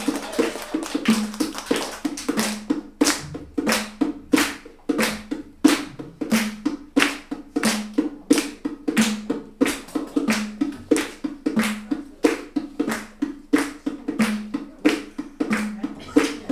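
Hand clapping close by, in a steady rhythm of about two claps a second.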